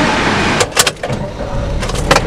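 A car heard from inside its cabin, with a low rumble and a few sharp clicks about half a second in and again near the end.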